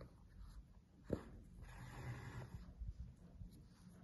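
Faint rustling of hands handling a crocheted chenille toy and drawing sewing yarn through it, with a soft tap about a second in.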